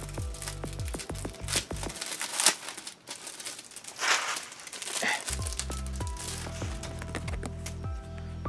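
Plastic packaging crinkling in several bursts, loudest about two and a half and four seconds in, as a pin's backing card is slid out of its sleeve. Background music with bass notes that drop out for a few seconds in the middle.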